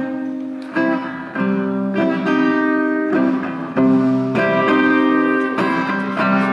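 Solo acoustic guitar playing an instrumental passage, with a new chord struck or changed about every second and left to ring.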